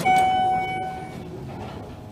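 A button click, then a steady electronic beep from the Schindler MT 300A elevator's car station lasting about a second.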